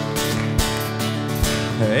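Acoustic guitar strumming steady chords, about two strums a second, as the introduction to a song.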